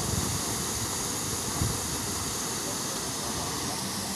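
Fountain jet spraying up and splashing back into a pond: a steady hiss of falling water, with a couple of brief low bumps near the start and about a second and a half in.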